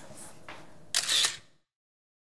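A camera shutter sound: one short, sharp click about a second in as a photo is taken.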